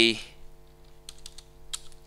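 A few light keystrokes on a computer keyboard as a word is typed, spaced out, with one a little louder near the end.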